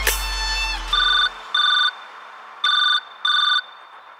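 A telephone ring dropped into a dance remix: two double rings, each made of two short bursts, as a bass note dies away and the beat drops out.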